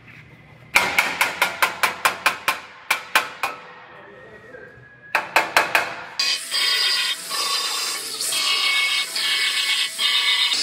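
Hammer tapping a steel body panel into place: a quick run of metal strikes, about five a second, a pause, then a few more. From about six seconds in a power tool runs steadily with a high whine, briefly letting off now and then.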